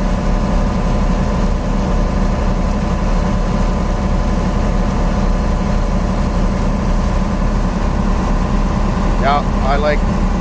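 Boat's engine running steadily while underway, a continuous low drone with a steady hum, mixed with wind buffeting the microphone on the open deck.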